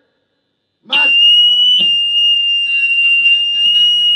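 An electric guitar struck about a second in and left to feed back through its amplifier: a loud, high, steady whine that holds to the end, with a few quieter picked notes underneath.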